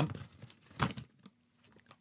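Crinkling and rustling of a plastic snack packet as a hand rummages inside and pulls out a piece, with a few light crackles and one sharper click in the first second or so.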